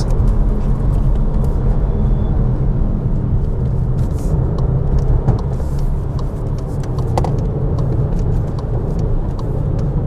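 Cabin noise of a VW Taigo's 1.0 TSI three-cylinder petrol engine and tyres on the move: a steady low rumble at an even level.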